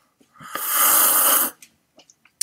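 A man drinking from a glass makes a loud, breathy rush of air through his mouth, about a second long, followed by a couple of faint clicks.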